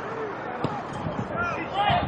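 Soccer players shouting short calls to each other on the pitch, with a couple of dull thumps.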